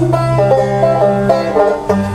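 Banjo picked in a quick run of plucked notes over acoustic guitar accompaniment, part of a country-folk song.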